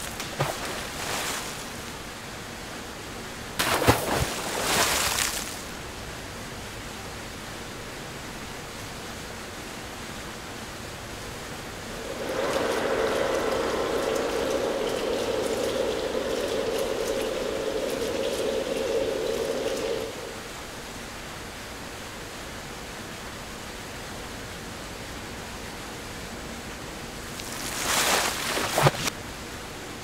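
Steady rush of running water in a banana washing tank, with brief louder splashes about four seconds in and again near the end. A steady hum joins for about eight seconds in the middle.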